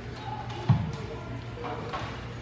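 One heavy thump about two-thirds of a second in as ice hockey players crash into the rink boards and glass.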